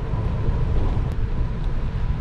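Wind buffeting the microphone of a bicycle rolling along a paved road, a loud, steady low rumble with tyre noise beneath.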